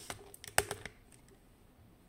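Handling noise: a quick run of light clicks and knocks in the first second, the loudest about half a second in, as the camera and gear are moved about on a desk.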